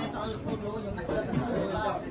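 Several people talking at once in low chatter, with overlapping voices.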